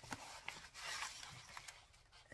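Faint rustling and scraping of paper as a bundle of paper cut-outs is slid out of a paper envelope pocket, with a few small clicks and a soft swell of rustle about a second in.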